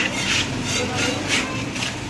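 A blade scraping the scales off a snakehead fish on a wooden chopping block, in rhythmic raspy strokes of about two a second.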